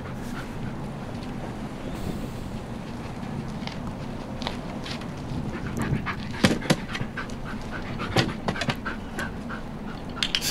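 German Shepherd dog panting steadily, with a run of sharp taps between about six and eight and a half seconds in as she steps about and up onto a training box.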